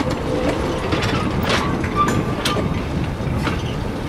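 Vintage wooden railway carriages rolling slowly past, wheels rumbling on the rails with sharp clicks about once a second. A brief wheel squeal comes about two seconds in.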